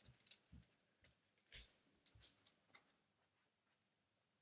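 Near silence, with a few faint, scattered taps and clicks, the clearest about a second and a half in.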